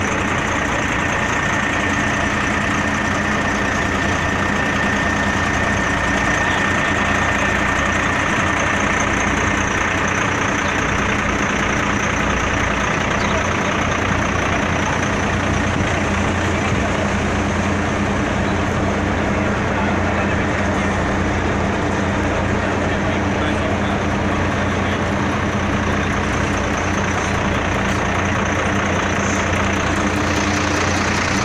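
Heavy grain trucks' diesel engines idling close by: a steady, even hum that does not rise or fall.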